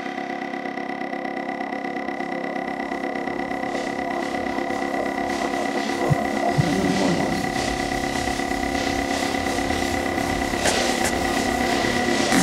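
Electronic techno track in a breakdown without its kick drum and bass: steady held synth tones that slowly build in loudness, with a few low thumps from about halfway through.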